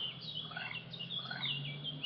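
Small birds chirping in the background: a scattering of short, quick falling chirps, over a faint steady low hum.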